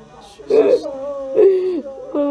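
A person's voice giving two drawn-out cries like "oh", each falling in pitch, about half a second and a second and a half in.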